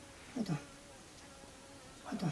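A bedridden man's weak moan: one short, low vocal sound falling in pitch, in two quick pulses about half a second in. A faint steady hum runs underneath.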